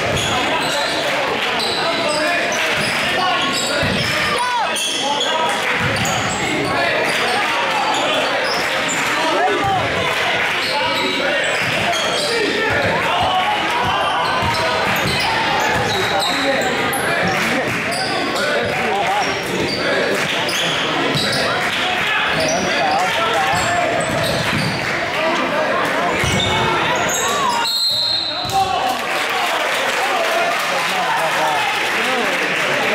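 A basketball being dribbled on a hardwood gym floor amid constant indistinct spectator chatter and calls in a large echoing gym. A brief high whistle sounds near the end.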